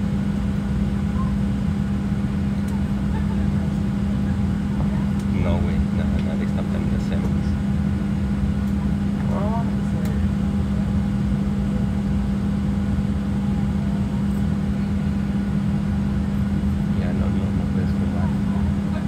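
Steady low drone inside a Southwest Airlines Boeing 737 cabin while the aircraft stands still, with faint passenger voices now and then.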